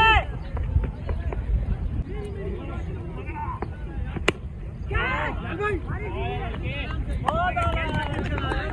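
A cricket bat strikes the ball once, a single sharp crack about four seconds in. Players shout calls a moment later.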